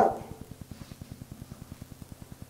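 A man's voice trails off at the end of a phrase. A pause follows, filled by a low buzz pulsing about twenty times a second in the old recording.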